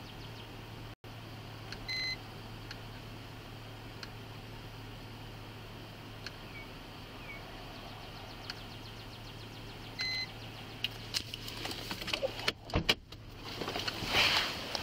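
Steady low hum inside a car cabin, broken by two short high electronic beeps about eight seconds apart. Near the end come clicks and rustling as someone shifts about inside the car.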